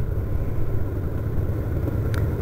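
Motorcycle engine running steadily as the bike cruises at low speed, a low even rumble.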